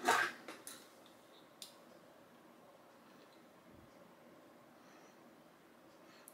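Light handling clicks as a loaded 9mm cartridge and a dial caliper are picked up, with one sharp click about one and a half seconds in, then faint room tone.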